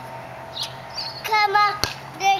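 A toddler's short, high-pitched wordless call in two parts, about a second and a half in, followed by a single sharp click just before the end.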